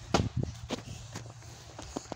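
Footsteps crunching in snow: a few uneven steps, the first the loudest, just after the start.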